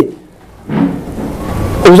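A pause in a man's talk, filled for about a second by a soft breathy noise, before he speaks again near the end.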